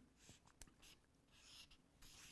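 Near silence with a few faint, short scratches of a felt-tip marker on flip-chart paper.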